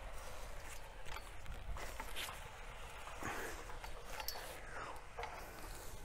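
Faint, uneven scraping and grinding of a steel hand auger bucket being twisted down into dry, sandy soil, with a few light clicks.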